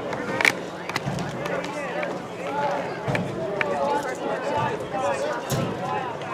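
Spectators at an outdoor youth football game chatting and calling out, several voices overlapping, with a sharp knock about half a second in.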